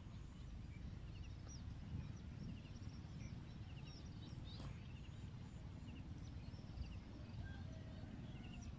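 Small birds chirping in short repeated trills over a steady low rumble, with one sharp click about four and a half seconds in.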